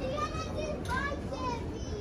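High-pitched children's voices talking and calling out among shoppers in a store, over a steady low background hum.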